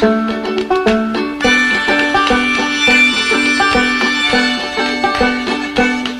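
Music: an instrumental stretch of a song, quick plucked-string notes in an even rhythm, with held higher tones joining about a second and a half in.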